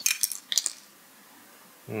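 A few sharp clinks in the first second: small plastic-encased magnet pieces clicking as they are handled and set down on a stone countertop.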